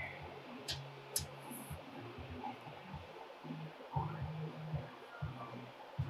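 Hand-operated punch working through sheet-steel floor-pan panel to make spot-weld holes: a couple of faint sharp clicks about a second in, then quiet handling knocks over a low hum. Its dies are getting dull.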